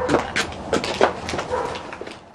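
Short, high-pitched human vocal sounds, several in quick succession, fading out near the end.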